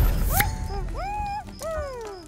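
A wordless, squeaky cartoon-character voice sound effect making three pitched calls. The first is a short rise, the second rises and holds, and the third is a long falling glide.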